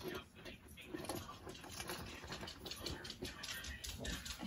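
Hands rummaging inside a Louis Vuitton Mini Lin Speedy canvas handbag, with soft irregular rustles and small clicks as items such as spare keys are settled inside.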